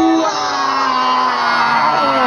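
Loud concert PA music heard from within the crowd: a held electronic tone ends just after the start and gives way to slow, falling pitch glides.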